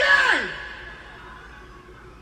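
A man's drawn-out shouted call in a hall, the rap battle host introducing a rapper, its pitch falling and ending about half a second in. A fading echo and low background noise follow.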